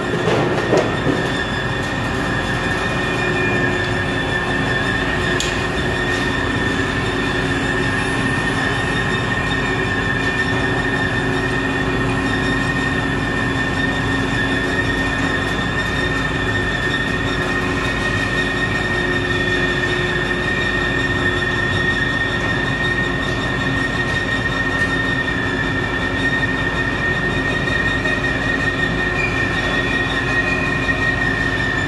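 Overhead bridge crane travelling with a steel coil of about 20 tons on its hook: a steady high-pitched whine from its drive over a lower hum and rumble.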